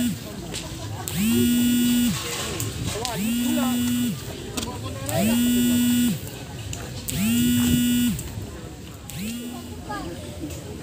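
A loud, steady horn-like tone sounding in identical blasts about every two seconds, each swelling in, holding one pitch for just under a second and dropping off, with fainter voices in between.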